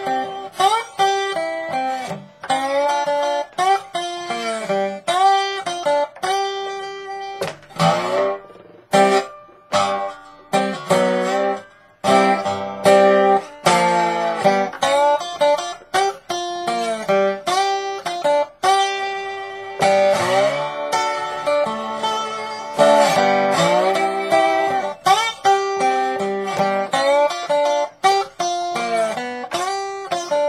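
Resonator guitar in open G tuning (D G D G B D) played with a bottleneck slide: a Delta blues riff of plucked notes, many sliding up into pitch, in repeating phrases with short breaks between them.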